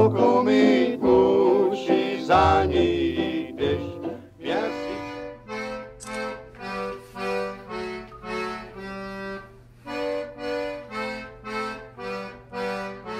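Recorded music with a singing voice, ending about four seconds in; then a squeezebox played solo, a tune of separate held chords about two a second, quieter, over a faint steady low hum.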